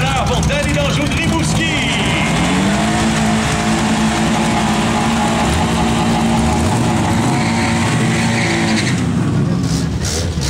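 Honda Civic doing a burnout: the engine's revs climb about three seconds in and are held steady for some six seconds while the tyres spin, then fall away near the end. A public-address voice talks over the start.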